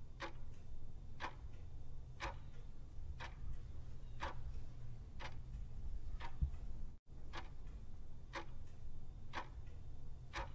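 Clock ticking about once a second, with fainter ticks between the main ones, counting down the seconds of a timer, over a steady low hum. The ticking breaks off for an instant about seven seconds in.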